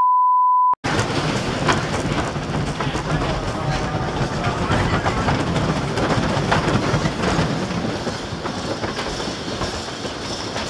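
A steady high beep cuts off suddenly under a second in. Then a Philadelphia Toboggan Coasters wooden coaster train rolls along the track into the station, its wheels rumbling and clacking, and the sound eases off gradually as the train slows.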